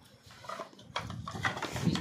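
Bamboo bansuri flutes knocking and clacking against each other as they are handled and settled into a padded bag. It is a run of irregular light knocks that grows busier after about a second.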